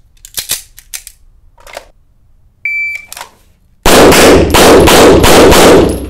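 Metallic clicks of a 9mm pistol being handled and charged, then a single shot-timer beep. About a second after the beep, a fast string of 9mm pistol shots at near full loudness fills the last two seconds.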